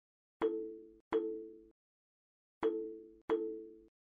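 Short synthesized plinking sound effects, four notes in two pairs, each struck sharply and dying away within about half a second, with dead silence between. They mark terms of an equation popping onto the screen in the animation.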